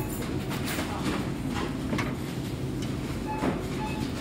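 Supermarket checkout sounds: a steady low rumble under scattered knocks and rustles of groceries being handled, and one short barcode-scanner beep near the end.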